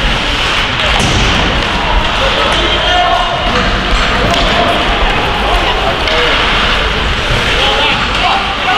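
Ice hockey game sounds in a rink hall: sharp clacks of sticks and puck and skate noise, with voices of players and spectators calling out, echoing in the hall.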